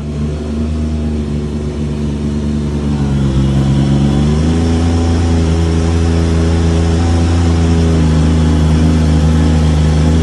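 Small jet boat's engine running at low speed, then stepping up in pitch and loudness about four seconds in as the throttle opens, and holding a steady drone after that.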